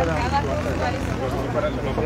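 Indistinct voices of several people talking at once, over a steady low rumble.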